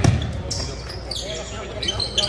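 A basketball bouncing on a hardwood gym floor as a player dribbles, with one loud bounce right at the start, in a large echoing hall.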